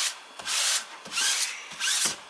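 Sticky lint roller rolled back and forth over a cotton tote bag, its adhesive tape rubbing and peeling off the fabric in three quick strokes, about one every two-thirds of a second.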